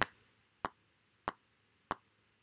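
Metronome count-in clicks before recording in GarageBand: three short clicks, evenly spaced a little over half a second apart at the 95 BPM tempo, with silence in between.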